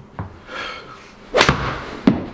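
A golf club strikes a ball off a hitting mat at full swing speed, with a sharp double crack about one and a half seconds in: the club on the ball, then the ball hitting the simulator's screen.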